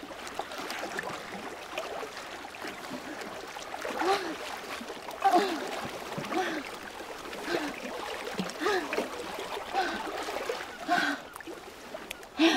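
A woman's short, effortful gasps and grunts, roughly one a second from about four seconds in, as she swims to a concrete ledge and hauls herself out, exhausted. Sea water splashes and laps around her.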